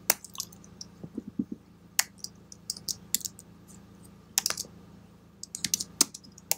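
Typing on a computer keyboard: irregular keystrokes with a quick run of keys about four and a half seconds in and another near the end, over a faint steady hum.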